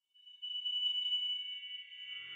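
A single high chime rings out about half a second in and slowly fades, the opening note of a title sting.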